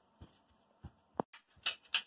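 A few faint, scattered taps and clicks from a toddler walking about and picking up a plastic toy tractor.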